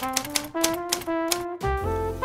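A quick run of typewriter key clicks, a sound effect, over brass-led background music.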